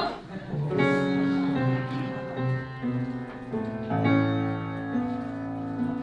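Piano playing a slow ballad introduction, with sustained chords that enter a little over half a second in and change every second or so.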